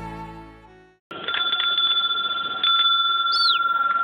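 Sad background music fades out, then after a moment of silence a phone's electronic ringtone starts up. It is a loud, steady pair of high tones that gets louder again just before the middle, with a few short high chirps over it.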